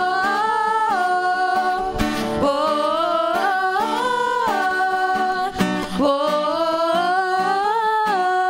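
Worship song performed live: voices singing long held notes over an acoustic guitar.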